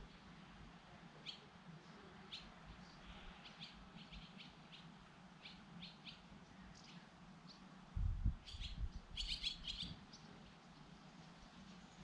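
Faint, scattered bird chirps, short high calls coming every second or so and crowding together near the end. For about two seconds near the end, a louder low rumble sounds under the chirps.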